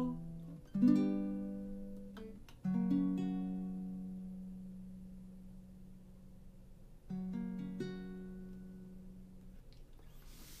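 Ukulele strummed in three slow chords, each left to ring out and fade. These are the closing chords of the song.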